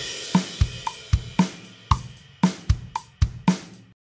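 GarageBand's virtual drummer playing a pop-rock beat on a sampled drum kit: a cymbal crash on the first beat, then kick drum, snare and hi-hat in a steady groove of a strike about every half second. The beat cuts off suddenly just before the end.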